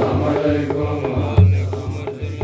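A group of men chanting an Islamic menzuma together over a steady beat of about three strokes a second, with a louder low thump about one and a half seconds in.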